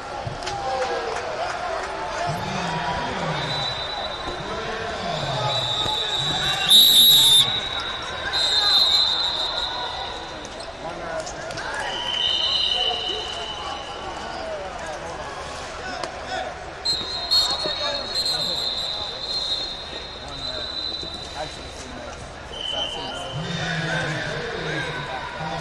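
Busy wrestling-tournament hall: shouting voices of coaches and spectators and thuds of wrestlers on the mat, with long, shrill referee whistle blasts several times. The loudest blast comes about seven seconds in.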